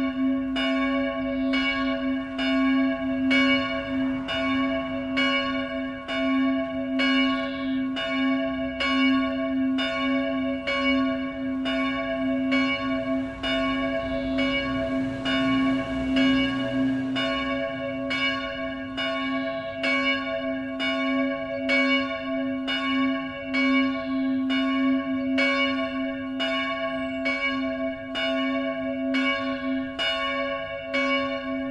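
A single church bell tolling steadily, struck about once a second, each stroke ringing on into the next.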